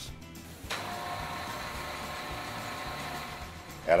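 Steady whirring machine noise from factory-floor equipment, starting abruptly under a second in and holding an even pitch with a faint whine, under soft background music.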